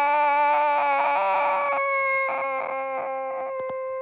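A young girl's voice holding one long, steady high note, a drawn-out wail made in pretend play, slowly fading away. Light clicks sound under it in the second half.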